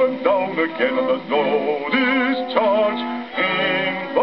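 Old 78 rpm Piccadilly shellac record playing on a gramophone: a bass voice with orchestra in the closing bars of the song, notes sung with vibrato. The sound is thin and cut off in the treble, as such records are.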